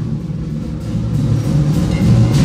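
Percussion ensemble playing live: a sustained low drum rumble, with only a light stroke near the end.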